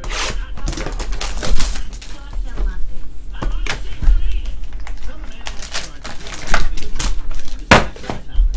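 Hands opening a sealed trading-card box: a dense run of sharp crinkles, clicks and taps as the plastic wrap is torn off, the cardboard lid opened and the foil packs handled.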